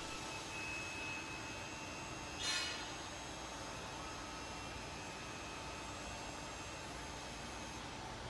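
Roll manipulator's DC-powered hydraulic clamp being switched open: a faint steady hum, with a brief ringing clack about two and a half seconds in.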